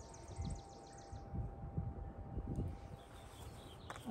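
A bird's fast high trill in the background that stops about a second in, over wind rumble on the microphone.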